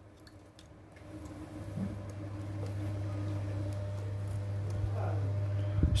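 A steady low hum that swells gradually over several seconds, with a few faint small clicks near the start.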